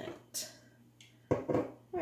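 A woman speaking in short phrases, broken by a pause of about a second; a brief soft hiss comes just after the first phrase.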